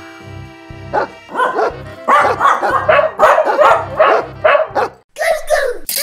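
A puppy barking over and over, about a dozen short barks at roughly three a second, over children's background music with a steady beat.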